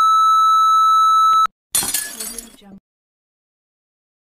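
Steady high electronic test-card beep that cuts off suddenly about one and a half seconds in. A moment later comes a brief crash sound effect, bright and fading over about a second, then dead silence.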